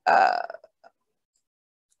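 A single short, throaty non-speech vocal noise from the lecturer, lasting about half a second at the very start.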